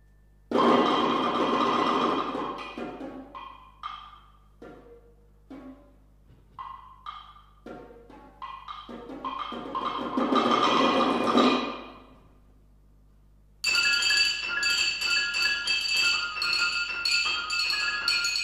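Piano and percussion duo playing contemporary chamber music: two loud, sustained masses of sound with short, sparse struck notes between them, then, after a brief pause about three-quarters of the way through, a sudden dense pattern of high, ringing bell-like tones.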